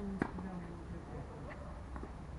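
A tennis ball struck by a racket with a sharp pop about a quarter second in, and a fainter second pop of the ball near the end.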